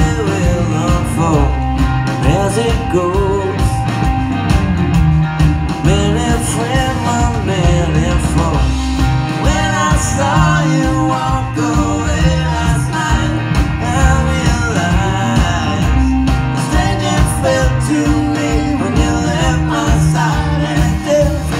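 A live rock band playing: a male voice singing over electric guitar and drums, loud and steady, heard from among the audience.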